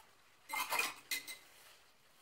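A brief clatter of hard objects clinking together, with a slight ring: a cluster of clinks about half a second in and a shorter pair just after a second.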